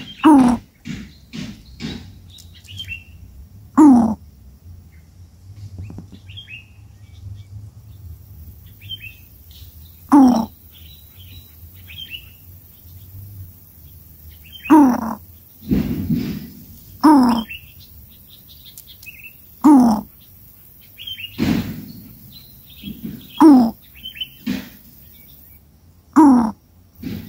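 Coucal calls at a nest: about ten short, harsh calls, each falling in pitch, come at irregular gaps of one to six seconds, with faint high chirps in between. A couple of dull bumps are heard near the middle.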